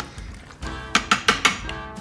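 Background music with several short clinks of tongs against the stainless steel inner pot of an Instant Pot as a thick, wet mix of chopped vegetables and meat is stirred, the clinks coming in a quick run in the second half.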